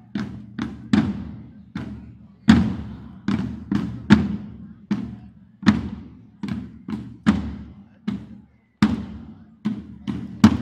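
Drum beats, struck about twice a second at an uneven pace, each stroke ringing on after the hit.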